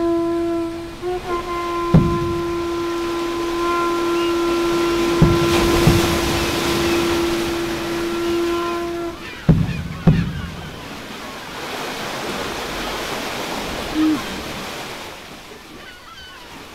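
A long steady horn-like tone is held for about nine seconds over the wash of sea surf, with a few dull knocks. The tone stops and the surf carries on alone, with one short falling honk-like call near the end.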